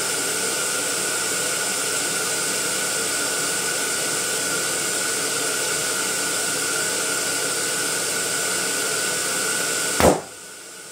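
Electric balloon inflator's blower running steadily as it fills latex balloons: an even rushing hiss with a steady whine. At the very end a balloon bursts with a loud bang.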